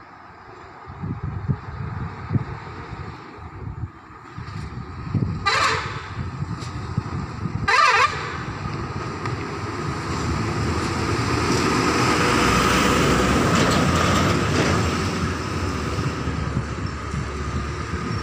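Two short truck horn blasts about two seconds apart, followed by heavy trucks' diesel engines and tyres growing louder as they pass close by, loudest about twelve to fourteen seconds in.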